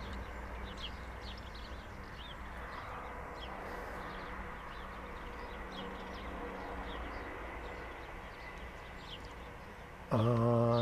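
Small birds chirping in short, high calls scattered irregularly throughout, over a low, steady background hum.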